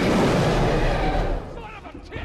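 A Tyrannosaurus rex roar from a film's sound design: loud and rough with a deep rumble, lasting about a second and a half before fading.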